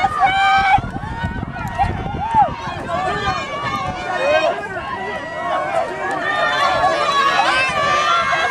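Spectators' voices in the stands, several overlapping at once, many of them raised and high-pitched, with no pause through the whole stretch.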